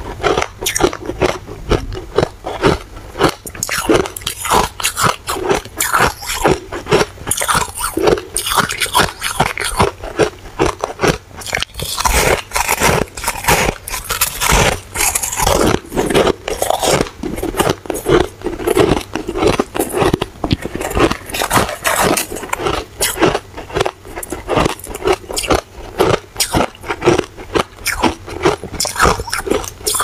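Close-up biting and chewing of soft, powdery frozen shaved ice: a continuous run of crisp crunches, several a second.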